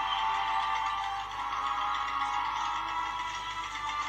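Orchestral or synth film-score underscore playing as steady, sustained held tones, with no beat.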